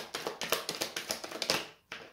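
A deck of tarot cards being shuffled by hand: a quick run of papery card flicks and slaps that stops shortly before the end, with one last flick after it.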